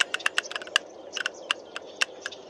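Blackbuck hooves clicking on stony ground: a rapid, irregular run of sharp clicks, about eight a second, over a faint steady hiss.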